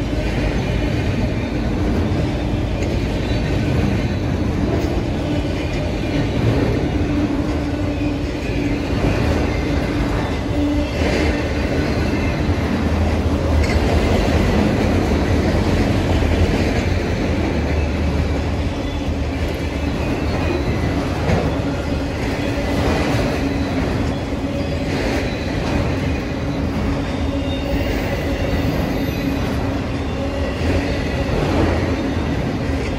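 A freight train of multilevel autorack cars rolling past close by: a steady, loud rumble and rattle of steel wheels on rail, with a few sharp clicks as the wheels cross rail joints.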